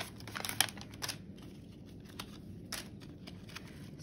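Clear plastic packaging crinkling and crackling in gloved hands as a port access needle is taken out of its pack. Several short crackles come in the first second, with a few fainter ones after.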